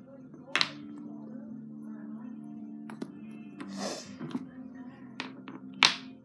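Painted wooden toy blocks knocking as they are picked up and set down on a wooden floor: about six sharp clacks, the loudest about half a second in and just before the end, with a brief rustle near the middle. Steady background music plays underneath.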